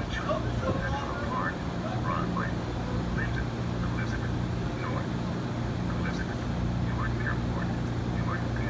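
Steady low hum from a stopped NJ Transit train standing at the platform, with scattered short high chirps and faint voices over it.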